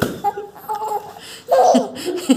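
Laughter and short playful vocal sounds, with a louder burst of laughter about one and a half seconds in.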